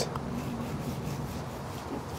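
Long slicing knife sawing through the crisp, crusty bark of a smoked brisket flat on a wooden cutting board, a soft, steady scraping rasp.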